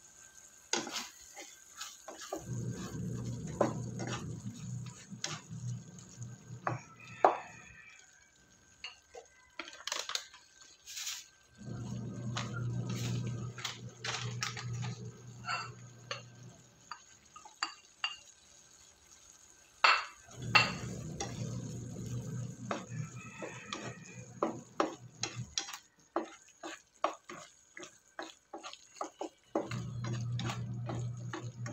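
Corned beef and diced potatoes simmering in a frying pan, with scattered pops and sharp ticks. Beneath it, a low hum from the electric cooktop comes and goes three times in spells of about five seconds, as the hob cycles its power.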